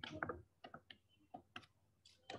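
Light clicks and taps of a stylus pen on a tablet or touchscreen during handwriting: several faint, short ticks at uneven intervals.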